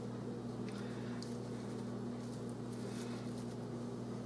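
A steady low hum, with a few faint soft clicks and rustles from hands pinching and tucking pastry dough at the rim of a pie dish.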